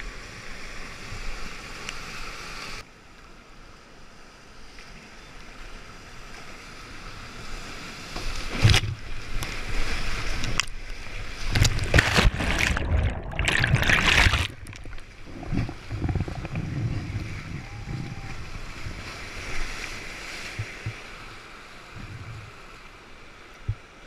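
Whitewater rushing and splashing close on the camera as a kayak runs a rapid. About nine seconds in the water turns loud and churning as the kayak is tumbled in a hole, the sound going briefly dull and muffled as the camera goes under, then settling back to a calmer rush.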